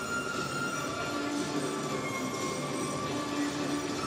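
Ice hockey arena ambience: a steady crowd murmur with music from the arena speakers playing long held notes.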